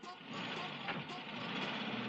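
Engine of a split-window Volkswagen van, an air-cooled flat-four, running steadily as the van pulls away.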